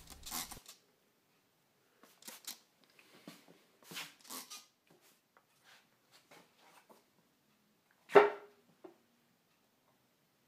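A few short hissing spritzes from a hand trigger spray bottle misting water onto the wood to help polyurethane glue cure, with light handling noise; about eight seconds in, one sharp knock with a brief ring, then a small click.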